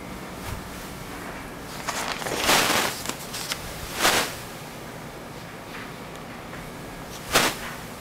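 A wet cloth towel rubbed across a sheet of glass in a few swishing wipes, the longest about two and a half seconds in, and a short sharp swipe near the end.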